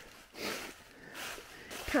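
A hiker's breathing while walking the trail: two long breaths, the second starting about a second in, just before he speaks again.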